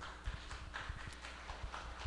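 Scattered hand claps from a small congregation: a thin, irregular patter of several claps a second, answering a call to applaud.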